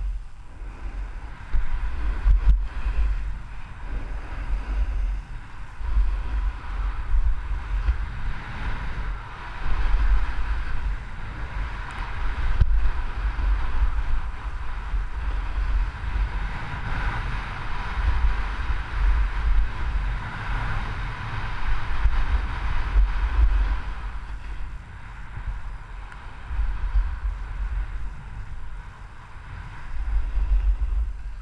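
Wind buffeting a body-worn action camera's microphone during a fast downhill run, with a steady scraping hiss of edges sliding over packed snow. It eases off for a few seconds near the end as the rider slows.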